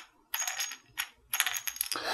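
Small metal one-hitter dugout being twisted and slid open and shut in the hands: three short bursts of light metallic clicking and scraping, with a faint ring.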